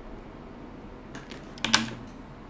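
A few soft clicks from a computer keyboard, then one short louder sound near the end.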